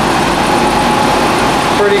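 Vincent screw press running on inedible egg: a loud, steady mechanical noise with a faint high hum, as shell-laden press cake discharges.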